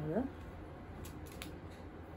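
Folded dress material being handled: a few faint, short rustles about a second in, over a low steady room hum. A woman's spoken word ends just as it begins.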